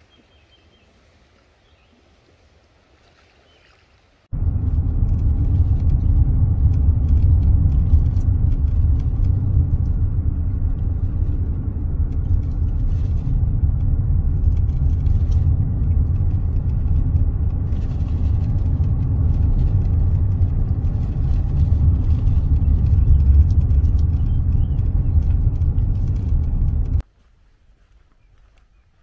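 Steady low rumble of a car driving on a paved road, heard from inside the cabin: engine and tyre noise. It cuts in suddenly about four seconds in, after faint quiet, and cuts off just before the end.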